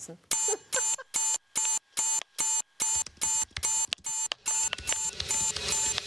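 Electronic alarm clock beeping in an even run of short pulses, about two to three a second, the 6 a.m. wake-up alarm. Music swells up underneath it from about halfway.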